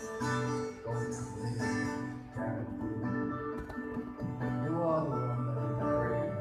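Worship music: an acoustic guitar accompanying voices singing a hymn, in sustained notes that change every second or so.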